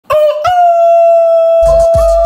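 A loud, long call on one held note that steps up slightly about half a second in. A deep, bass-heavy hip-hop beat comes in near the end.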